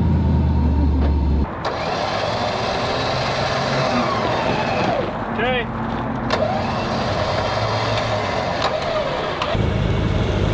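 A wrecker truck's engine running with a steady low hum that cuts off about a second and a half in and starts again near the end.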